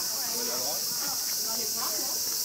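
Steady, high-pitched drone of insects in the surrounding trees, with voices of people chatting nearby underneath it.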